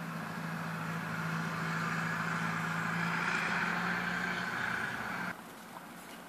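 A steady engine hum, like a motor vehicle running, swelling a little toward the middle and cutting off abruptly about five seconds in.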